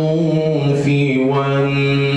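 A man chanting Arabic religious text solo into a microphone, in long drawn-out melodic notes on a low pitch, stepping down in pitch a little past halfway.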